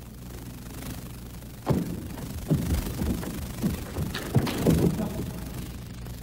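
Sports hall ambience: a steady low hum, then from about two seconds in a string of short scattered voices and sharp knocks.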